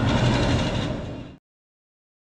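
Outdoor background sound with a steady low hum, fading and then cutting off to silence about one and a half seconds in.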